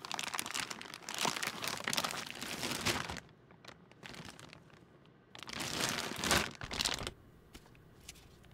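Clear plastic bag crinkling as a 35mm film reel is unwrapped and pulled out of it. The rustling comes in two spells, the first about three seconds long and the second starting a little after five seconds in, with a quiet gap between.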